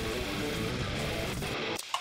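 Playback of a pop punk mix with a distorted electric rhythm guitar recorded through a Boss Katana 100 MkII amp, playing at moderate level and stopping a little before the end. The guitar tone is a bit too muffled.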